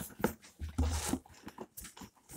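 Hands handling a softcover coloring book inside a cardboard box: irregular scrapes, rustles and small knocks of paper against cardboard as it is worked loose.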